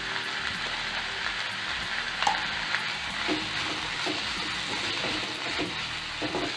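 Chopped onions, tomatoes and curry leaves sizzling steadily as they fry in oil in a pan, with a few light taps of the spatula against the pan.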